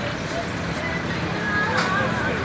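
Street ambience: a steady traffic rumble with indistinct voices talking, one voice coming up briefly near the end.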